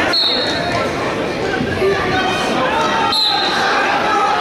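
Spectators in a gym shouting and talking. A short, high referee's whistle blast sounds just as it begins, and another comes about three seconds in.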